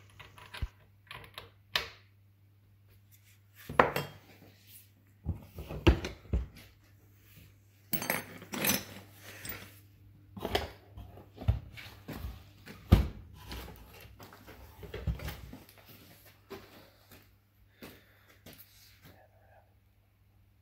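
Irregular metallic clinks, clatters and knocks of a chainsaw scrench and a Stihl MS660 chainsaw being handled on a workbench as the bar nuts are done up and the saw is set down, with a few much louder knocks among them. A steady low electrical hum runs underneath.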